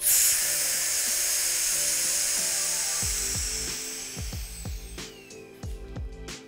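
Air hissing into a vacuum chamber through its opened release valve. It starts suddenly, holds for about three seconds and then fades away as the chamber comes back up to atmospheric pressure.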